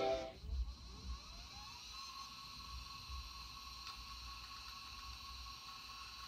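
A Conner CP2045 2.5-inch SCSI hard drive spinning up at power-on. Its faint whine rises in pitch over the first two seconds, then holds steady, with one faint click about four seconds in. The end of the Macintosh startup chime dies away at the very start.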